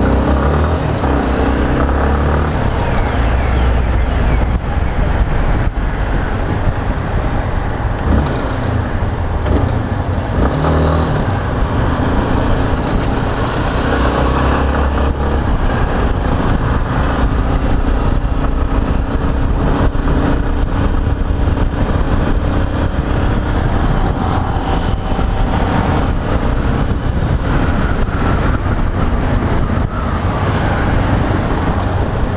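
Yamaha XTZ 250 Ténéré's single-cylinder four-stroke engine running under way, heard from the rider's own bike, rising and falling with the throttle, with steady low rumble from air rushing past the microphone.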